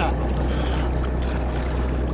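Escort boat's engine running steadily with a low drone, under an even hiss of water and wind.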